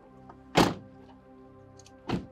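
A door shutting with a single heavy thunk about half a second in, over steady background music.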